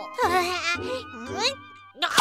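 Cartoon character's short pitched effort sounds, twice, while winding up a swing with a bat, over light background music and a low steady buzz.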